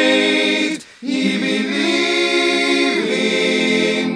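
A choir singing unaccompanied, holding long chords. The sound breaks off briefly just before a second in, then resumes, and moves to a new chord near three seconds.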